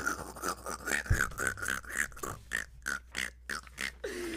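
A man's breathy, wheezing laughter: a run of short gasps, about four a second, with a low thump about a second in.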